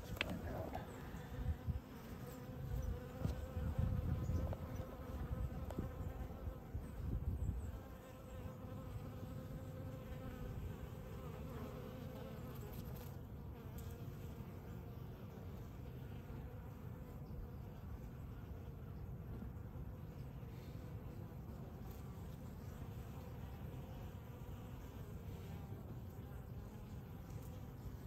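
Honeybees buzzing at a hive entrance: a steady hum of many wingbeats. Some low rumbling lies under it during the first several seconds.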